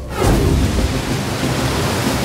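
A sudden loud rush of noise opens with a quick falling swoosh and settles into a steady deep rumbling roar, a sound effect like crashing water or thunder.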